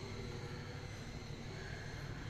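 Steady low background rumble and hum with no distinct events.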